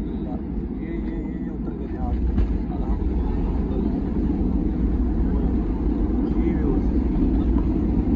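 Airliner cabin noise during the landing roll on the runway: a steady low rumble of engines and rolling wheels that grows louder about two seconds in.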